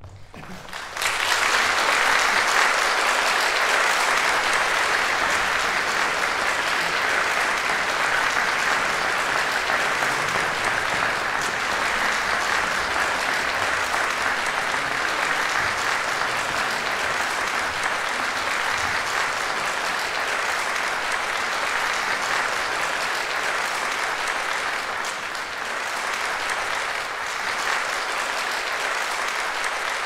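Audience applauding. It breaks out about a second in and keeps up steadily, easing slightly toward the end.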